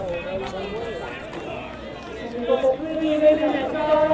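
Spectators' voices talking and calling out close to the microphone, louder from about halfway through.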